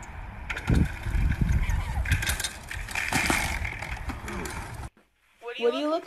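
Scattered knocks and clattering over a noisy background. After a brief silence near the end, a toddler's voice comes in, rising in pitch.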